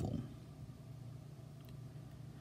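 Quiet room tone: a faint, steady low hum with light background hiss.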